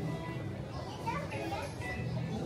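Background music with voices in a public hall, among them a high child's voice that rises in pitch about a second in.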